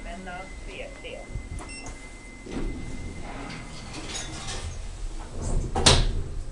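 People talking in the background, then a sudden loud thump just before the end.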